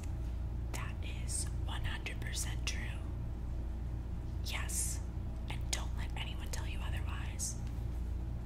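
A woman whispering in short phrases, over a steady low hum.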